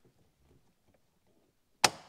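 Near silence, then one sharp click near the end: a shift cable end snapping off its pivot on the manual gear-shifter as it is pulled up.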